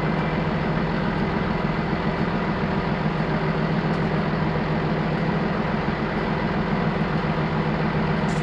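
Crane's diesel engine idling steadily at an even pitch.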